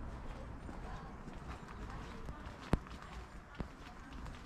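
Outdoor ambience on a paved footpath with footsteps and a few sharp clicks, the loudest a little before three seconds in.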